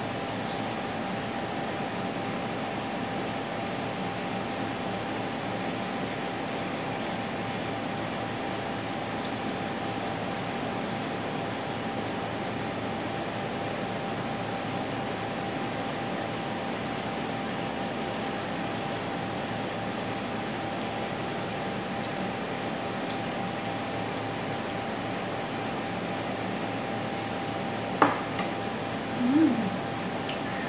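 A steady machine hiss with a faint constant hum tone, unchanging throughout, as of a running fan or air-conditioning unit in the room.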